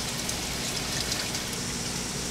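Water splashing and trickling steadily into an aquaponics fish tank from the white PVC return pipe fed by the pump.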